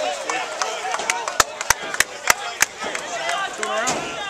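Five sharp claps in an even rhythm, about three a second, starting about a second and a half in, with people talking in the background.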